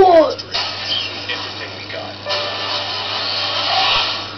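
A movie trailer's soundtrack playing through a computer monitor's small built-in speakers and picked up in the room: a loud sound sweeping down in pitch right at the start, then noisy effects and music that swell again in the second half, over a steady low hum.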